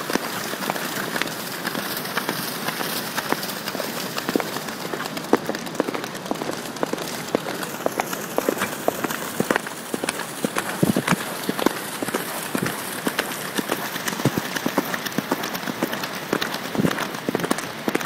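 Horses galloping on wet beach sand at the water's edge: irregular hoofbeats and splashes through shallow water over a steady rush of surf.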